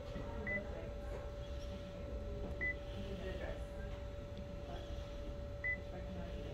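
Office copier touchscreen beeping at key presses: three short high beeps, a few seconds apart, over a steady hum.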